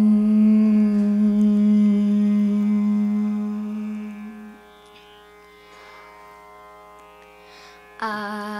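A child's voice holds one long steady note for about four and a half seconds, opening a Carnatic kriti, over a steady tanpura-style drone. The note fades out and the drone carries on alone until the singing resumes at the very end.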